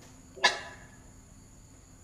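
A single brief, sharp sound about half a second in that fades away quickly, over a faint steady high-pitched electrical whine.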